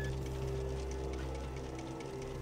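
Small balls dropping through the glass pegs of a bean-machine-style ball-drop board, giving faint irregular ticks, several a second, over a steady low hum.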